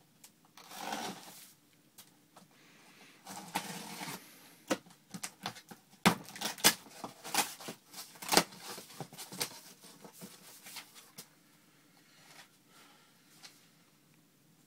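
Cardboard shipping box being opened by hand: an irregular run of scrapes, rustles and sharp cracks of cardboard and tape, loudest in the middle stretch.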